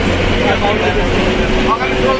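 Inside a moving bus: steady engine and road rumble with people's voices talking over it, and a steady whine that comes in about halfway.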